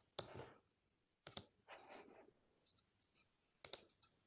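Computer mouse clicking on a desk, three sharp clicks about a second or more apart, the later two each a quick double click, with soft rustling between them.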